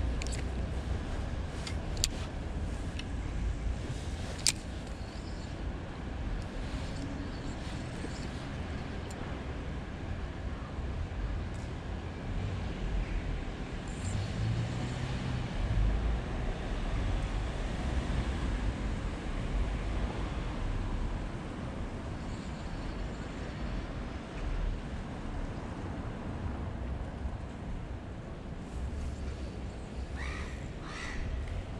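Steady rumble of city traffic, with a few sharp clicks in the first five seconds.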